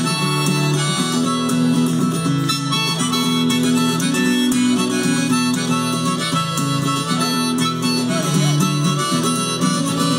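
Acoustic guitar strummed in a steady rhythm under a harmonica playing long held notes, amplified through a PA: the instrumental intro of a folk song.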